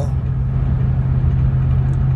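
Car interior noise while driving on a highway: a steady low drone of engine and road noise heard from inside the cabin.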